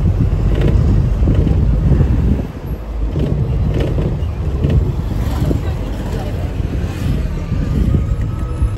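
Moving minibus heard from inside the cabin with a side window open: steady low rumble of engine and road with air rushing in.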